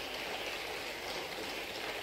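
Steady, faint hiss of room noise from a large hall picked up by a podium microphone, with no voice and no distinct events.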